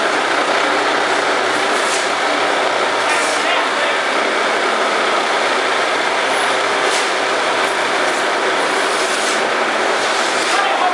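Automatic wall-plastering (rendering) machine running: a steady mechanical noise as its carriage climbs the mast and trowels mortar onto the wall, with a few brief high hisses.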